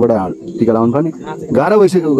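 A man's voice talking, ending in a drawn-out exclamation that rises and falls in pitch.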